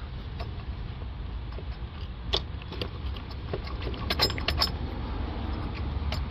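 Small clicks and rattles of a throttle body being wiggled loose on its mounting, with a cluster of them about four seconds in, over a steady low rumble.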